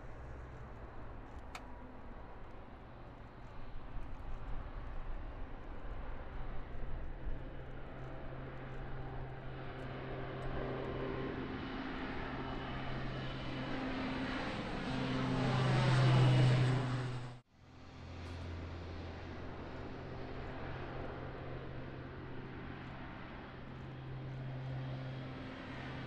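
Four turboprop engines of a special-operations C-130 Hercules at take-off power as it climbs out, a steady propeller drone that grows louder to a peak about 16 seconds in. It cuts out abruptly for a moment, then resumes.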